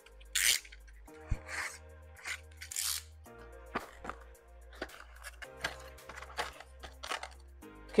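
Quiet background music with a steady, repeating bass line, over short scrapes and rustles of a cardboard box being handled and its lid slid open. The loudest scrape comes about half a second in.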